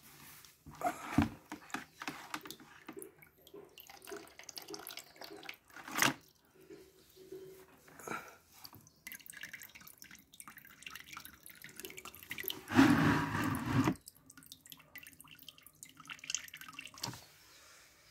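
Water dripping and trickling from the end of an IV drip set's tube into a plastic bucket as the bottle drains. A sharp click comes about six seconds in, and a louder burst of noise lasting about a second comes about thirteen seconds in.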